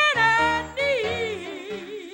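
A woman singing a gospel song solo into a microphone. She holds loud, high notes at the start, then slides down into a long note with wide vibrato that fades, over a steady low accompaniment.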